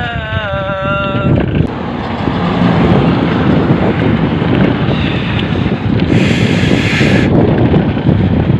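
Wind buffeting the microphone over the steady rumble of highway traffic. A brief hiss sets in about six seconds in and stops about a second later.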